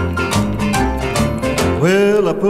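Country music instrumental passage: guitar playing over a bass line and a steady beat.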